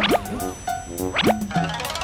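Upbeat children's song music, the instrumental lead-in before the singing, with a steady beat and a rising boing-like slide effect twice, about a second apart.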